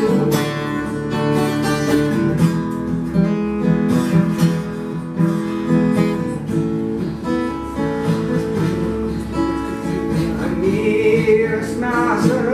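Acoustic guitar played in an instrumental passage of a song, with picked notes and strummed chords. A man's singing voice comes back in near the end.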